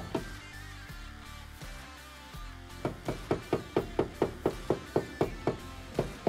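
Light, quick taps of a PDR blending hammer on a car's steel body panel, about five a second, starting about three seconds in. The taps are knocking down high crowns and blending them into the dent. Background music plays throughout.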